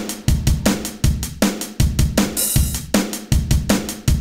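A steady rock drum beat, with kick and snare hitting two to three times a second and a cymbal crash about halfway through.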